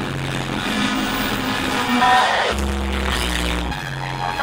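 Live electronic music playing loud through a concert sound system. A deep bass note comes in a little past halfway and cuts off shortly before the end.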